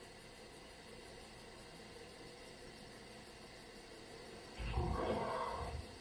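A single low, roar-like growl lasting a little over a second near the end, after a stretch of faint hiss.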